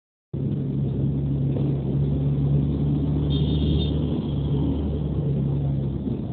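Vehicle engine running with a steady low hum, heard from inside the moving vehicle. A short high-pitched tone sounds briefly about three seconds in.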